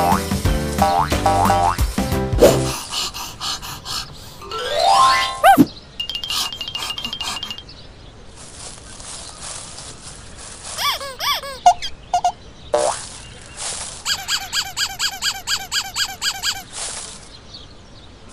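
Cartoon sound effects. A short stretch of music gives way to a rising whistle and springy boings and squeaks, with fast ticking in between. Near the end comes a run of quick bouncy notes, about four a second.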